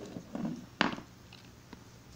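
Faint handling noises from a small toy figure and its packaging, with one sharp click a little under a second in.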